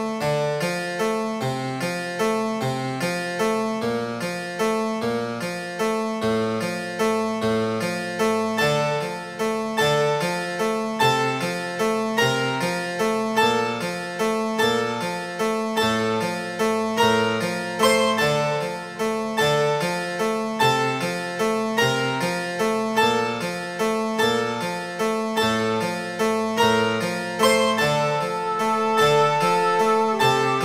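Contemporary classical keyboard music: a steady stream of quick, evenly spaced notes, about four a second, over a repeating figure of low notes.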